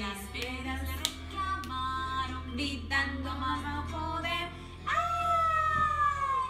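Children's song playing, a woman singing in a high voice with bending, swooping notes. Near the end comes one long held note that slides downward.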